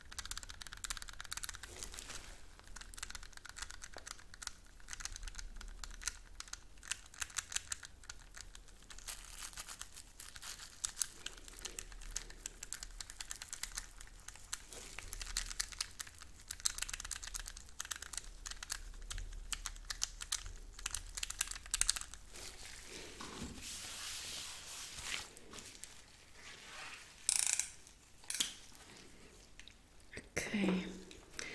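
Plastic cling film crinkling and rustling under gloved fingers and a tissue, with many small irregular clicks and taps, and a few louder crackles near the end.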